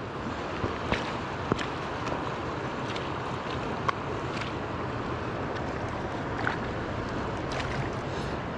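The fast-flowing Truckee River rushing steadily over rocks. A few light clicks come through it, with a sharper tap about four seconds in.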